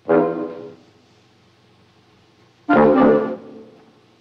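Two short, loud brass-like blasts from an experimental animation film score, about two and a half seconds apart. Each is a cluster of several pitched notes: the first dies away within about three-quarters of a second, and the second is held a little longer before it drops off.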